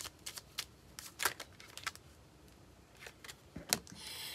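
An oracle card deck being shuffled and handled, a run of soft irregular card flicks and clicks, with a card drawn and laid down on the table near the end.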